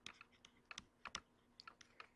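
Faint, irregular clicks and taps of a stylus writing on a tablet screen, about a dozen light ticks spread unevenly over two seconds.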